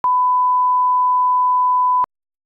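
Steady 1 kHz line-up reference tone, the test tone that plays with colour bars at the head of a broadcast tape. It starts and stops abruptly, each with a click.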